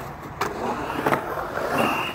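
Skateboard wheels rolling on concrete as the board carves around the bowl, a steady rushing noise with a couple of sharp clicks about half a second and a second in.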